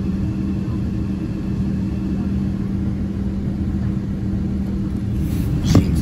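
Steady drone of a Boeing 777 airliner cabin on descent, engine and airflow noise with a constant low hum. A short knock sounds near the end.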